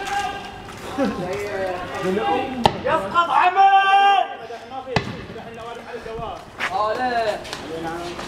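Men's voices shouting in the street, including one long held call midway, with two sharp bangs about two seconds apart.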